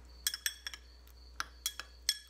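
Metal spoon clinking against a glass bowl while stirring sliced scallion whites in vinegar: about half a dozen irregular, ringing clinks.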